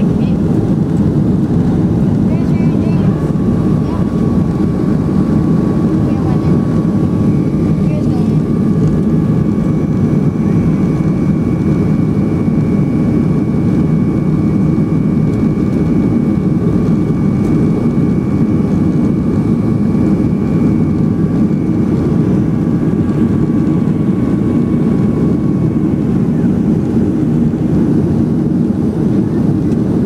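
Steady jet engine and airflow noise inside a Boeing 737 cabin during the climb after takeoff: a loud, even rumble. A faint high whine sets in a few seconds in and fades out a few seconds before the end.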